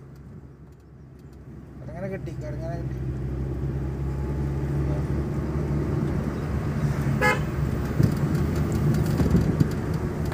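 Car engine and road noise heard from inside the cabin while driving a winding hill road, getting louder about two seconds in. A short horn toot sounds about seven seconds in.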